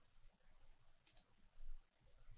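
Two quick clicks of a computer mouse about a second in, over near silence.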